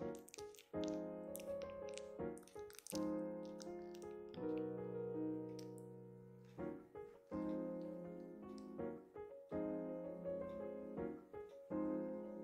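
Background piano music: slow chords struck every second or two, each note ringing and fading before the next.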